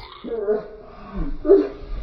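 A few drawn-out, wavering vocal calls, whimper-like, each about half a second long.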